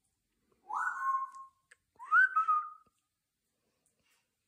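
African grey parrot whistling two short notes about a second apart, each sliding up and then holding steady, the second a little louder.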